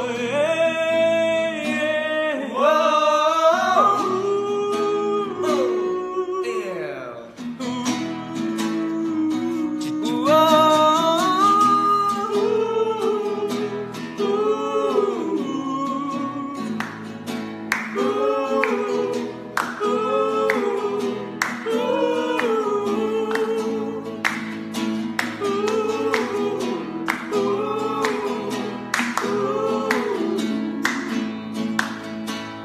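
Men singing a melody together, accompanied by a strummed nylon-string classical guitar, with a brief break in the singing about seven seconds in.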